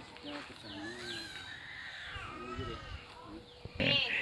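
Faint background voices with a bird's repeated short downward chirps.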